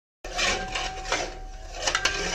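A metal spatula scraping and stirring fried potatoes through thick masala paste in a metal pan, starting a moment in after a brief dead silence, with one sharp clink near the end and a faint steady high tone underneath.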